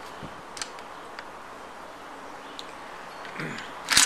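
Steady background with a few faint light clicks from handling a Spanish Mauser 1893 on its rest, then a sharp metallic clack near the end as the bolt is worked to clear a cartridge that would not fit the chamber.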